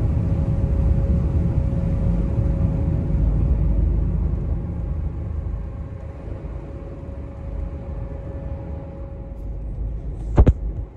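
Deep, steady rumble of a ferry heard from inside a passenger deck during a storm crossing, with a faint steady hum over it. The rumble eases a little about halfway through, and the hum stops near the end.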